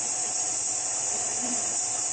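Steady high-pitched hiss of background noise, unchanged throughout, with no distinct stirring or scraping sounds standing out.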